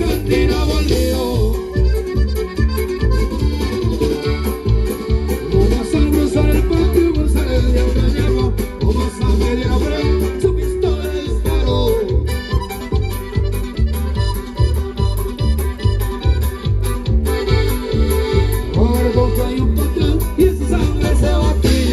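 Live norteño band music with accordion over a steady bass beat, playing loud for dancing.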